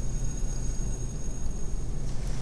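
Steady low background hum with a faint high, thin whine; no alarm bell is heard.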